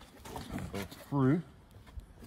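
A short voiced sound from a man, a brief word or murmur with a dipping pitch, about a second in, with faint clicks and rustling of handling around it.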